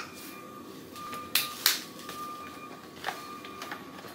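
A few light plastic clicks and taps as a toddler's plastic plate is handled and set onto a plastic high-chair tray, over a faint steady room hum.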